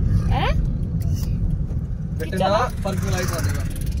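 Steady low rumble of road and engine noise inside a moving car's cabin, with short bursts of voices over it.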